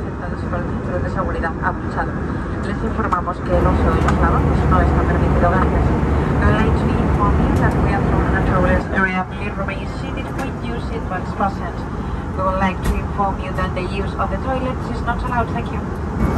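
Airliner cabin noise in flight: the steady roar of an Airbus A320's engines and airflow, with indistinct voices talking over it. The low rumble grows louder about three seconds in and drops back about nine seconds in.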